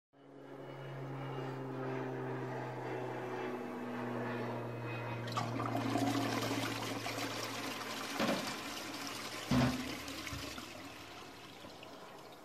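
Motorhome toilet flushing: a low steady hum, then a rush of water for a few seconds with two knocks near the end, fading away.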